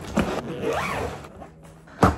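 Zipper on a hard-shell suitcase being run closed, a continuous rasp.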